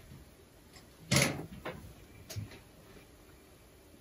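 A short bump about a second in, then two fainter knocks, against the low hush of a quiet room.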